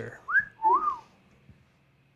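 A person whistling two short gliding notes, a quick rising one and then a rise-and-fall, as an admiring whistle.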